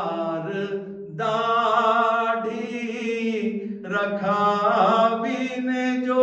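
A man's voice chanting a Gujarati manqabat in long, drawn-out melismatic phrases, with brief breaks for breath about a second in and again near four seconds.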